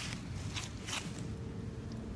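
Soft footsteps on grass, a few light scuffs and clicks over a low outdoor rumble, with a faint steady hum joining about halfway through.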